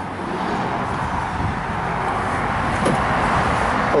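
Road traffic noise: a steady rushing that slowly swells, like vehicles passing on a nearby road.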